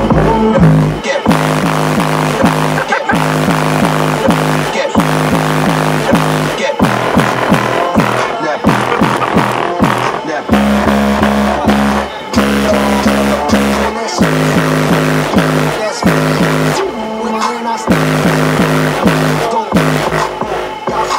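Bass-heavy electronic music played very loud through a competition car audio system of eighteen 15-inch MTX subwoofers powered by Rockford Fosgate Power amplifiers. A deep bass riff repeats with a steady beat, broken by short drop-outs about every two seconds.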